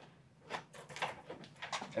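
Window roller blind being pulled down by its cord: a run of light, irregular clicks and rattles.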